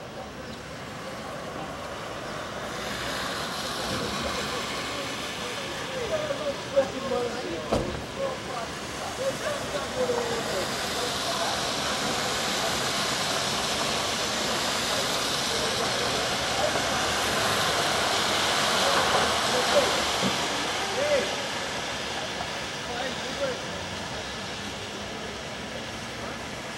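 Street traffic noise that builds slowly over the first few seconds, is loudest about three-quarters of the way through, then eases off. Faint, distant voices of two men arguing on the sidewalk break through now and then.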